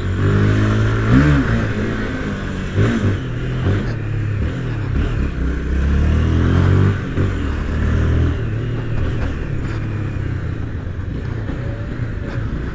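Honda CB300's single-cylinder engine revving up and easing off again and again, its pitch rising and falling as the bike accelerates and slows through stop-and-go traffic, over a steady hiss of wind on the helmet microphone.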